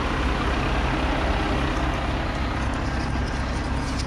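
Semi truck's transmission-driven hydraulic wet kit running while pumping product off a tanker trailer, with the hydro pack's fan cooling the hydraulic oil: a steady mechanical drone with a low hum.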